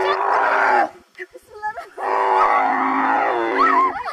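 A camel bellowing and groaning in two long, gurgling calls as it is made to rise from kneeling with two riders on its back.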